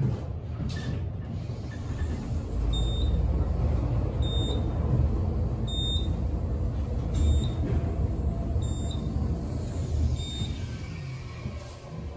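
An Otis elevator car travelling upward with a steady low rumble. A short high beep sounds each time it passes a floor, six in all, about every second and a half. The rumble eases off near the end as the car slows for its stop.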